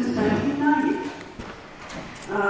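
A voice speaking over a hall's PA, breaking off after about a second into a pause in which a couple of faint knocks are heard.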